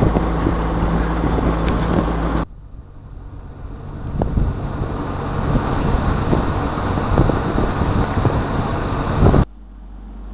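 A sailboat's engine running with a steady hum while motoring along a canal. About two and a half seconds in it cuts off suddenly to wind buffeting the microphone, which builds over several seconds. Near the end it cuts abruptly back to the engine hum.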